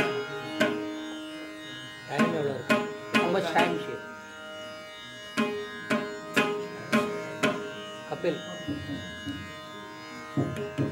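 Carnatic concert music: mridangam strokes at about two a second over a steady drone. A voice comes in briefly about two seconds in and again near the end.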